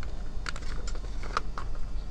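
A plastic blister-packed toy being handled and pulled off a metal pegboard hook, giving a scatter of light, sharp clicks.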